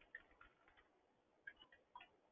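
Faint computer-keyboard key clicks, a few scattered taps with a short cluster near the end, over near silence.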